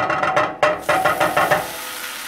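Butter dropped into a very hot frying pan starts sizzling a little under a second in, a steady hiss that carries on, over background guitar music.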